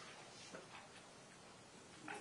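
Near silence: room tone, with a faint footstep tap about half a second in as someone walks across a hard floor.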